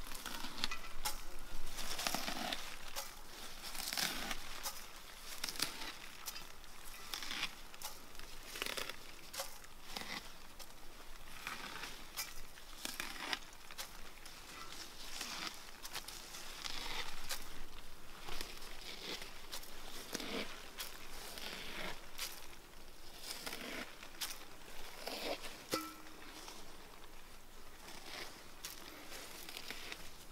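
Good King Henry seed heads being stripped off their stalks by hand. The stems and leaves give a run of short, irregular dry rustles and crackles, and seeds and bits of leaf drop into an enamel bowl.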